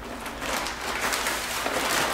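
Nylon fabric of a collapsible pop-up drone landing pad rustling and swishing as it is twisted and folded down on its spring hoop, growing louder as the folding goes on.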